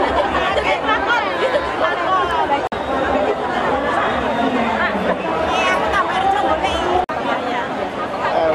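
Crowd chatter: many people talking at once, with no single voice standing out. The sound drops out briefly twice, a little under three seconds in and about seven seconds in.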